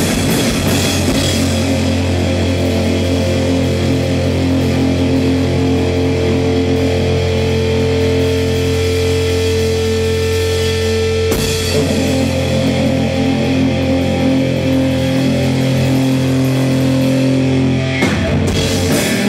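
Live sludge/noise-rock band: electric guitar and bass through amplifiers holding loud, droning chords that ring out, the drums dropping out about a second in. The held chord changes suddenly about eleven seconds in, and the drums come back in at the very end.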